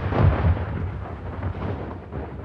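Cinematic logo-sting sound effect: deep boom-like hits at the start with a rumbling, noisy tail that fades away.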